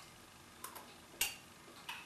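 A metal spoon clinking against a small glass jar while someone eats from it: three light clicks about half a second apart, the loudest a little past the middle.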